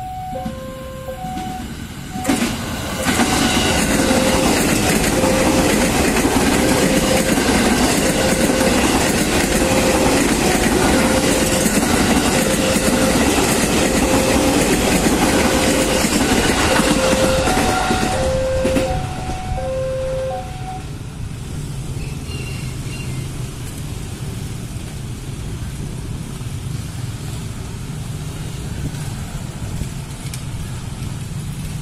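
A KRL commuter electric train passing close by, loud for about fifteen seconds with wheel and rail noise, while a level-crossing warning bell rings in an even, repeating ding. The bell stops about twenty seconds in, leaving the lower hum of motorcycle engines at the crossing.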